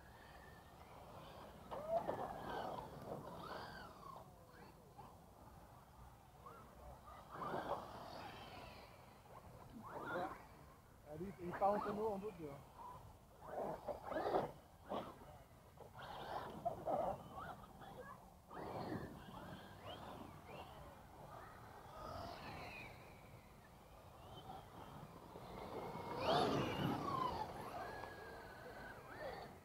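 Battery-powered brushless RC trucks accelerating and braking on a dirt track. Their motors and drivetrains whine, rising and falling in about eight separate bursts.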